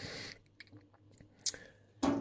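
Near silence: room tone, with one brief click about one and a half seconds in.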